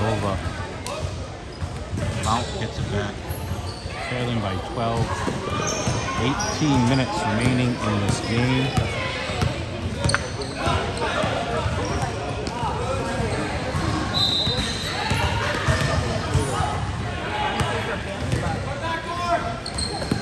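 Basketball dribbled on a gym floor, with players and spectators calling out across a large gym.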